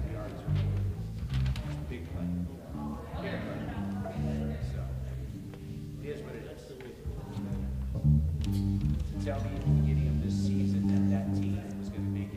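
Bass and guitar playing a slow run of held low notes that change pitch every second or so, with indistinct talking over it.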